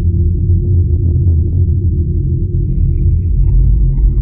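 Deep, steady bass rumble opening a hip-hop track's intro, with a faint high tone joining near the end.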